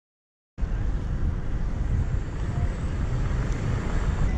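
Silence, then about half a second in, outdoor street sound starts abruptly: a low, uneven rumble of wind on a GoPro action camera's microphone over city traffic noise.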